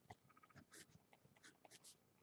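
Very faint scratching of a marker writing on paper, in a few short strokes.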